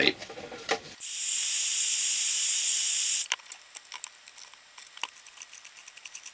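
Heat gun blowing a steady, high-pitched hiss of hot air for about two seconds, softening the plastic of a headlight housing, then cutting off suddenly. Light clicks and taps of the plastic being handled follow.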